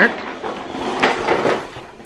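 Plastic wheels of a toddler's push walker rolling over a hardwood floor: a rough, steady noise that fades near the end.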